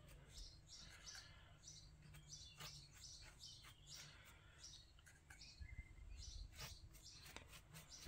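Near silence: faint room tone with scattered faint, short high chirps and small clicks.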